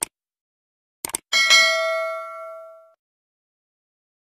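Subscribe-button sound effect: a mouse click, then a quick double click about a second in, followed by a bright bell ding that rings out and fades over about a second and a half.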